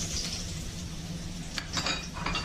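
Garlic sizzling after being dropped into smoking-hot oil in a wok, with a few clinks of a utensil against the wok near the end.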